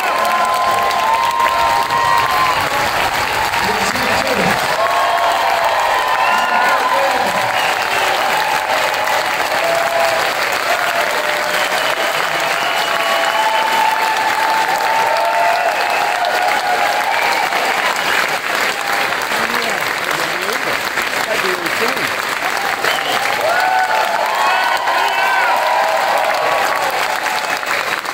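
Concert audience applauding: steady, loud clapping throughout, with cheers and shouted voices over it.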